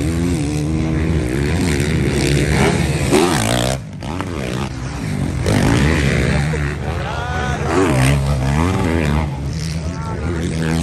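Motocross bikes racing on a dirt track, their engines revving up and down again and again as riders take the jumps and corners. The sound drops away briefly about four seconds in.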